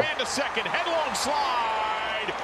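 Faint TV baseball broadcast audio: an announcer's voice calling the play.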